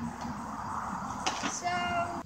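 Ripstick caster board's wheels rolling over a concrete path, a steady rumble, with a knock about a second and a quarter in as the rider steps off the board. A brief held voice sound comes near the end.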